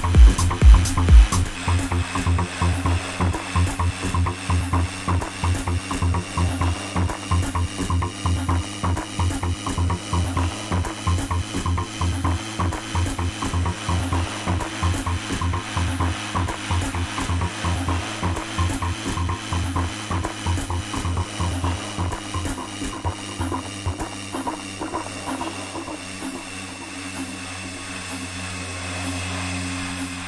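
Electronic dance music played from vinyl on a DJ's turntables. The kick drum drops out about a second and a half in, leaving a breakdown of fast, even pulses under a slowly rising and falling tone, which thins to a held drone near the end.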